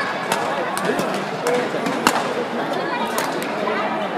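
Badminton rally: several sharp racket strikes on the shuttlecock, the loudest about two seconds in, over steady hall chatter.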